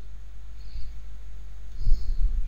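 Steady low hum with faint hiss, the background noise of a recording setup, with a brief low swell near the end.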